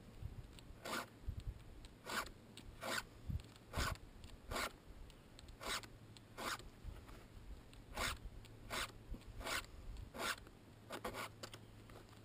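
A hand file sharpening the cutting teeth of a Stihl chainsaw chain, dulled by cutting dead wood: short, light rasping strokes, about one a second.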